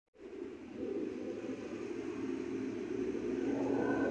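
A steady, low rushing noise of the open outdoors that starts suddenly and slowly grows louder.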